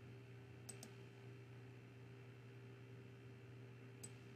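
Near silence with a faint steady hum, broken by two quick computer mouse clicks close together just under a second in.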